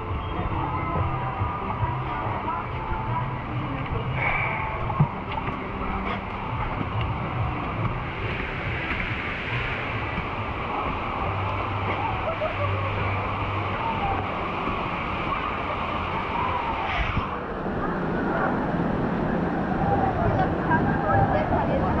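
Steady rushing water with indistinct background voices of other people, continuous throughout.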